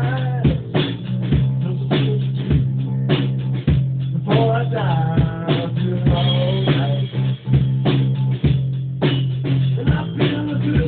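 Live rock jam played loud in a small room: a drum kit keeps a steady beat under electric bass and guitar, with some bending guitar notes about halfway through.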